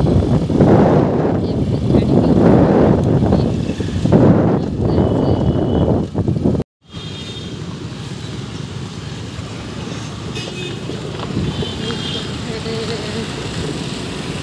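Wind buffeting the microphone and road noise from riding on a moving two-wheeler, loud for the first six or seven seconds. It breaks off suddenly, then gives way to quieter, steady street traffic noise.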